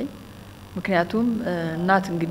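A woman's speaking voice, which resumes after a pause of under a second, over a steady low electrical hum.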